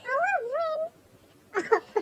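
A single drawn-out, high vocal call that wavers down and back up in pitch for under a second, then stops. A short burst of sound follows about a second and a half in.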